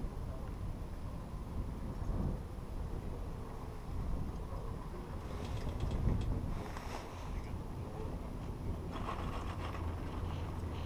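Chairlift ride: wind rumbles steadily on the microphone, and the lift runs underneath. Bursts of fast rattling clicks come about halfway through and again near the end as the chair nears a lift tower, typical of the haul rope running over tower sheaves.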